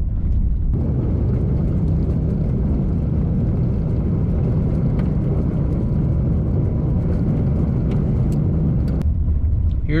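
Heard from inside the cabin, a vehicle driving slowly along a gravel road: a steady rumble of engine and tyres on gravel, with a few faint clicks in the last seconds.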